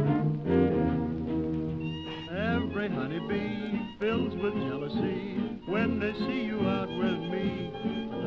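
Early jazz band record, 1920s–30s, played from vinyl. A held ensemble chord gives way about two seconds in to a lead line of sliding, swooping notes over the band.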